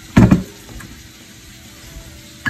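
A glass mixing bowl set down on a wooden cutting board: a short knock with a second contact just after it, then only a faint steady background.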